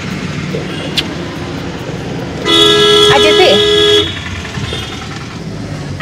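A car horn sounding one steady two-tone blast of about a second and a half, midway through, over the steady road and engine noise heard from inside a moving car.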